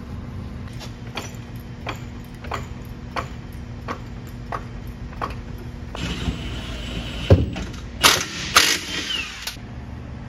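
Workshop sounds over a steady low hum: a run of evenly spaced sharp clicks, about one every two-thirds of a second, from work on a car's rear suspension. Near the end there is a loud thump, then two short, harsh bursts.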